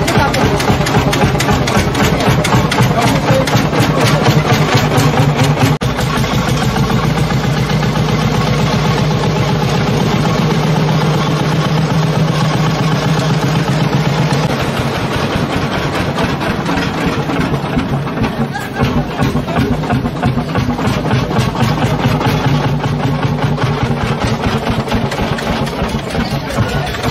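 Ursus C45 tractor's single-cylinder horizontal two-stroke hot-bulb engine running, a steady, rapid chugging of evenly spaced firing beats.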